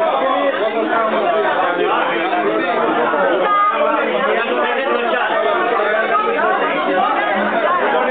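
Many people talking at once: a steady hubbub of overlapping conversations in a room full of people.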